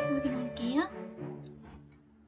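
Background music: a held instrumental chord that fades out toward the end, with a short rising voice-like glide early on.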